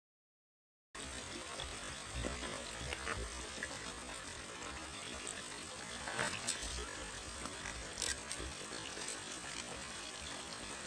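Hiking boots stepping over loose rocks and gravel, with a few scattered crunches and clicks over a steady hiss and wind rumble on the microphone; the sound starts abruptly about a second in.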